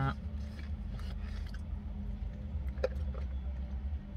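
Steady low hum of a car idling, heard from inside the cabin, with a few faint clicks and one sharper tap a little before three seconds in.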